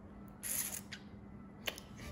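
Faint rustle of a phone being handled and moved against clothing or bedding, with one sharp click near the end.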